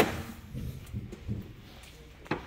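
A sharp click as the hood release lever under the dash of a 2010 Ford F-150 is pulled, followed by a few faint low knocks.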